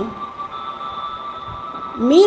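A faint steady high-pitched tone, a background drone, over a light hiss, with a brief soft low thud about a second and a half in.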